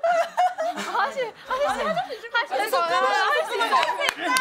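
High-pitched voices talking over one another with snickering laughter.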